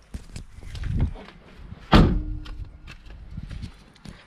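Knocks and shuffling from moving about inside a stripped car cabin, with one sharp, loud knock against the car body about two seconds in that rings briefly, then a few lighter knocks.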